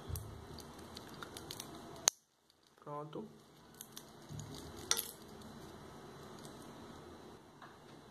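Stainless steel watch bracelet being handled, its links clinking and clicking lightly. There is a sharp click about two seconds in and another near five seconds.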